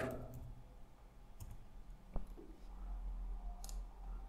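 A single sharp computer mouse click about halfway through, with a few faint ticks of keys or mouse around it, over a low steady room hum.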